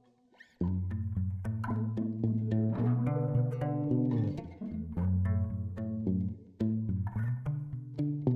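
Background instrumental music: short pitched notes over a bass line, starting about half a second in after a brief silence.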